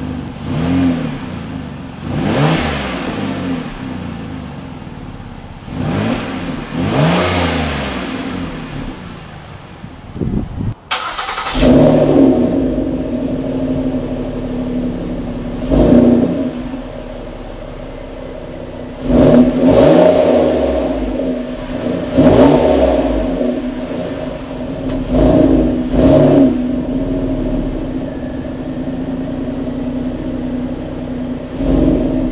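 A 2011 Ford Edge's 3.5L V6 idling and blipped to higher revs four times through its stock exhaust, which has a small leak. After an abrupt cut about eleven seconds in, the same engine idles louder, with a steady drone, through a Gibson cat-back dual split aluminized exhaust and is revved about five more times.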